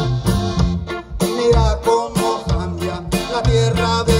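Live band music from an amplified regional Mexican group: guitars and drums playing an instrumental passage with a steady dance beat.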